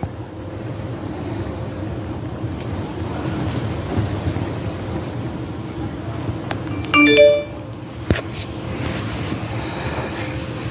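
A phone's short electronic notification chime sounds once, about seven seconds in, over steady background noise; a brief click follows about a second later.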